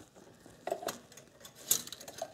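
Light clicks and taps of an automatic-transmission dipstick being worked into its filler tube: two small clicks a little under a second in and a sharper one near the end.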